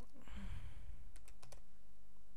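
Typing on a computer keyboard: a quick run of sharp keystrokes in the second half as a word is typed, over a steady low hum.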